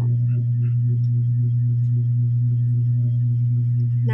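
A loud, steady low hum with a faint regular pulse about three to four times a second.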